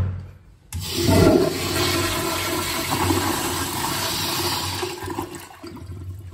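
American Standard commercial toilet flushed by its flush valve: a clack at the very start, then under a second later a sudden loud rush of water through the bowl that holds steady and eases off near the end.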